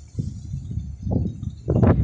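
Irregular low rumbling gusts buffeting the microphone, swelling several times and loudest near the end.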